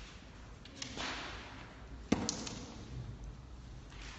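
A single sharp smack about two seconds in, the loudest sound, followed by a few lighter clicks. It is preceded by a click and a brief rustling hiss about a second in.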